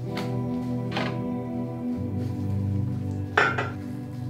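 Background music with three sharp clinks and knocks of small glass chemical bottles from an E6 film-developing kit being handled and set down, the loudest near the end.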